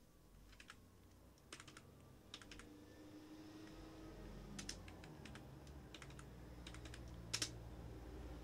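Faint computer-keyboard keystrokes, scattered and often in quick pairs, as forward slashes are typed to comment out lines of code. The sharpest pair comes near the end, over a faint low hum.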